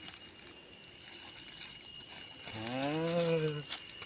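Steady high-pitched insect drone from the forest, with a man's drawn-out voiced 'ooh' or hum of about a second, rising then falling slightly, past the middle.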